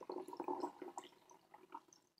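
Brewed green tea poured from a teapot in a thin stream into a glass mug: a faint splashing trickle that grows softer after about a second.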